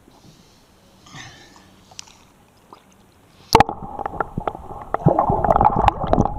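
Lake water heard through a camera plunged beneath the surface: a sudden splash about three and a half seconds in, then loud muffled gurgling and bubbling, full of small clicks.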